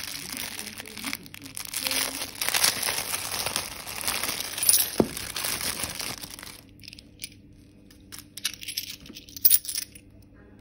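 Thin clear plastic bag crinkling as it is pulled open for several seconds. Near the end come a few sharp clicks of gold-coloured coins clinking together in the hand.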